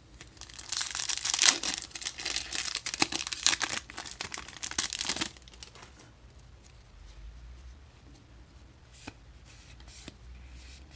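A Magic: The Gathering Kaldheim Collector Booster foil wrapper being torn open and crinkled by hand: dense crackling for about five seconds that stops abruptly, followed by faint handling of the cards.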